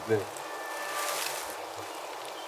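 The last spoken word ends just after the start. After it comes a steady, soft, airy hiss of outdoor ambience, swelling slightly about halfway through, with faint thin tones over it.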